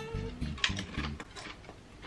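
Pringles crisps being chewed: a few short crunches in the first second or so, then quieter.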